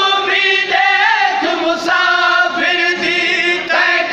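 A group of men chanting a nooha, a Shia lament, together in unison.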